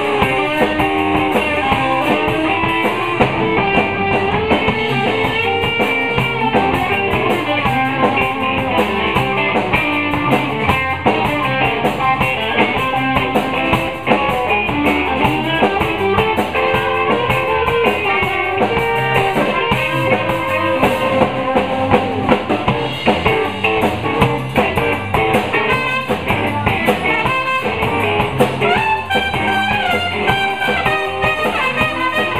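Live blues band playing an instrumental break, with electric guitar, bass guitar and drum kit, and a trumpet playing near the end.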